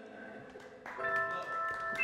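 After a short quiet stretch, an electronic keyboard comes in about a second in with a steady held chord.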